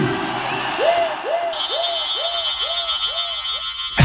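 Music in a DJ mix between tracks, with no beat: a pitched electronic swoop repeating about two and a half times a second and fading away, with a high steady shimmer coming in about a third of the way through.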